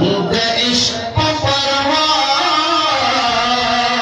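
A man singing a Pashto naat into a microphone, in long held notes that rise and fall.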